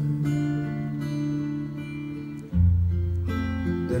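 Acoustic guitar strumming a live accompaniment. A chord rings and slowly fades, then a new, lower chord is struck about two and a half seconds in.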